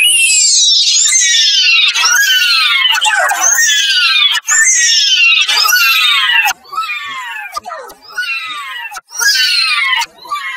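Character voice clips saying "no" over and over, pitched high and distorted by audio effects, each cry a falling wail about a second long. The cries drop in volume about two-thirds of the way through, with one loud cry again near the end.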